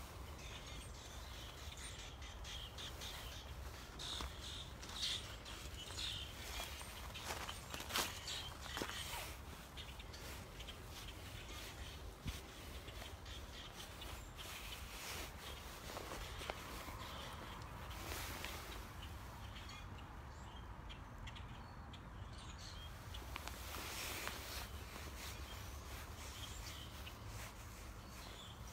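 Many wild birds chattering, with irregular short chirps and calls that come thickest in the first third and again in a few bursts later on, over a steady low rumble.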